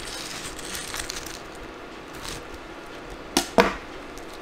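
Serrated knife sawing through the crisp fried crust of a nori-wrapped chicken piece on a wooden cutting board, crackling, with two sharp knocks near the end.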